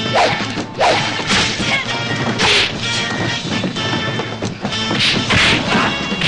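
Film fight sound effects: a series of punch and strike impacts, several close together in the first half and two more near the end, over the film's music score.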